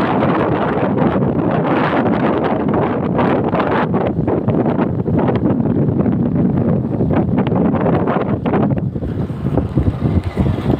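Heavy wind buffeting the microphone of a phone carried on a moving motorcycle, a steady loud rush mixed with the bike's running. The rush thins and turns gusty about nine seconds in.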